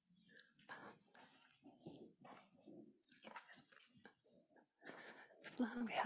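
Faint, distant voices of people talking off-microphone while they settle into their seats, over a steady high hiss, with a clearer woman's voice near the end.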